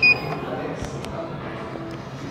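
A single short, high beep from a Schindler elevator hall call button as the down button is pressed, acknowledging the call.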